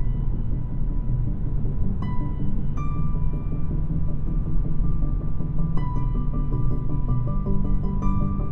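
Electronic music playing through the 2022 Mazda 3's 12-speaker Bose audio system, heard in the cabin, with a heavy low end. Sustained synth notes layer in about two seconds in and again near six seconds.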